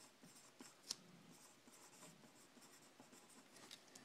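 Faint scratching of a pen writing a word by hand on paper, in short irregular strokes with a sharper tick about a second in.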